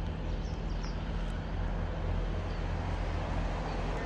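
Diesel engine of a GWR Class 158 diesel multiple unit idling steadily at a station, a low even hum.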